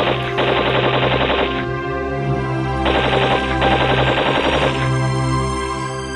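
Two bursts of rapid machine-gun fire, about two seconds each, the second starting about three seconds in, over music with held notes.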